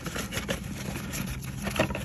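Cardboard box and packaging rustling, with short clicks and scrapes as parts of a DEF filter kit are handled, over a steady low engine hum.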